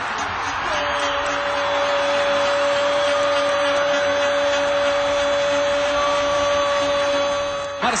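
A football commentator's long, drawn-out goal shout, one steady held note lasting about seven seconds, over continuous stadium crowd noise.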